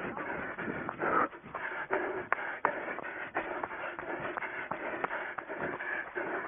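A runner's footsteps through grass and dry brush, with continuous rustling of vegetation and scattered irregular knocks and clicks.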